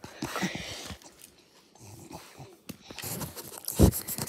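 A pug making short, scattered breathy noises close to the microphone during rough play, with a thump near the end as the dog bumps into the phone.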